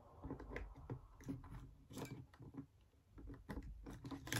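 A few faint, irregular clicks and light rustling as a battery is fitted into a Sony ZV-1 compact camera's battery compartment.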